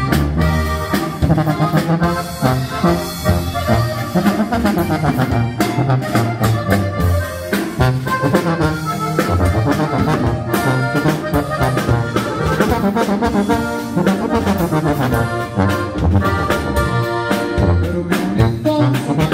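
Norteño band playing the opening of a corrido live: sousaphone bass line, button accordion melody, guitar and drum kit keeping a steady dance beat.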